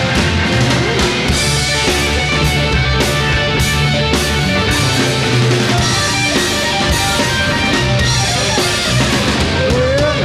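Psychedelic rock band playing live, with electric guitar and drum kit and no singing in this passage.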